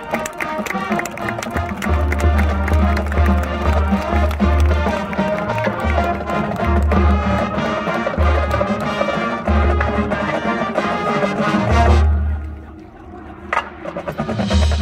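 Marching band playing a loud, full passage of brass with percussion, deep bass notes pulsing in and out. About twelve seconds in the sound drops away to a quiet stretch, then a sharp hit comes just before the end.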